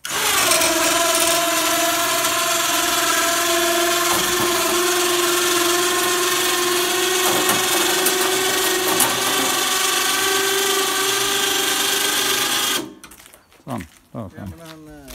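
Electric winch motor whining steadily under load as it winds in its cable and hoists a heavy steel snowblade from the road to upright. It starts abruptly and cuts off suddenly near the end.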